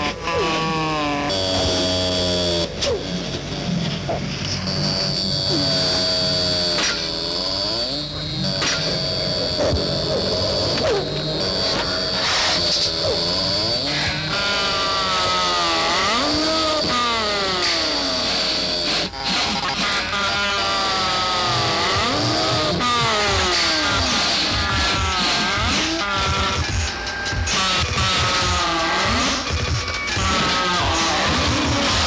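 Dense experimental noise: many tones sliding up and down in pitch over a steady low rumble. A constant high whine runs through the middle part.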